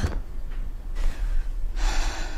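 A steady low room hum, with a short breathy intake of breath near the end.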